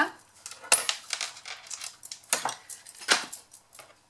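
Ribbon being pulled out and handled on a desk: a few short clicks and rustles, the sharpest just under a second in.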